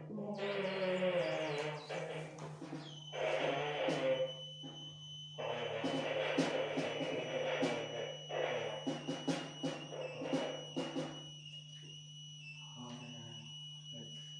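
Improvised noise music: dense, grainy blocks of noise start and stop abruptly over a constant low hum, with a thin high steady whine and scattered sharp clicks. It drops to a sparser, quieter texture for the last few seconds.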